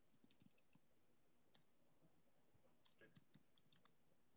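Near silence: room tone with scattered faint short clicks, a few early and a small cluster about three seconds in.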